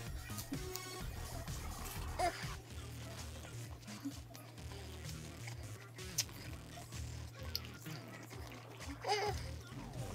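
Chewing and wet mouth sounds from eating over quiet background music, with a crisp crunch about six seconds in as a dill pickle spear is bitten.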